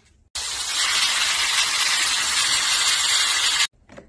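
Airbrush spraying paint: one steady hiss of compressed air that starts suddenly a moment in and cuts off just before the end.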